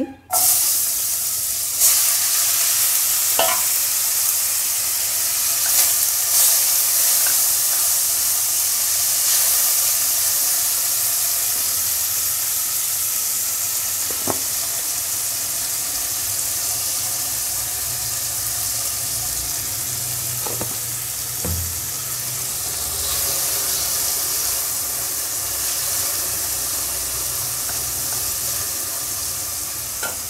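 Potatoes frying in hot oil in a kadai, a steady sizzle that starts abruptly at the beginning, with a few light clicks of a utensil against the pan.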